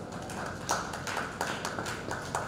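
Scattered hand clapping from a small audience: separate, irregular claps, several a second, starting right at the opening.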